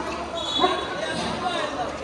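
Basketball bouncing on a gym floor during play, with voices echoing around the hall.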